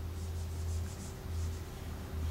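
Dry-erase whiteboard being wiped with a hand eraser: a quick run of short back-and-forth rubbing strokes in the first second and a few more a little later, over a low hum.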